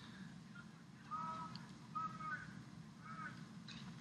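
Faint distant shouts, a few short calls spaced about a second apart, over a low steady background hum of game ambience.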